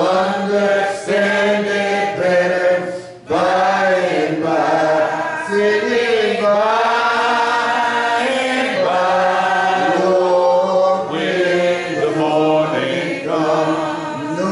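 A congregation singing a hymn unaccompanied, in the a cappella manner of the Churches of Christ, holding long notes, with a short break between phrases about three seconds in.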